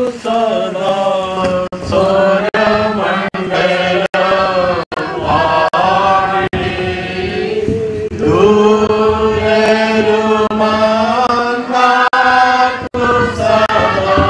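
Voices singing a slow Christian funeral hymn in unison, with long held notes over a steady low sustained note. The sound is broken by several very brief dropouts.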